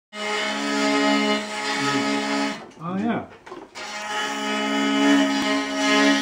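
Homemade hurdy-gurdy played: a rosined wheel bowing the strings gives a steady, buzzy drone with a melody note above it. The sound breaks off for about a second a little before halfway, when a brief voice is heard, and then starts again.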